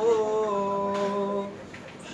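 A man's voice holding one long sung note of a marsiya elegy, unaccompanied; the note dips slightly just after it starts, then holds steady and fades out about a second and a half in.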